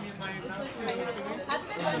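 People talking and chattering at a table, with a few short clicks of tableware.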